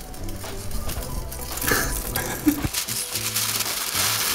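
Background music with a steady bass line, over the crinkle and rustle of a sheet of baking paper being crumpled by hand.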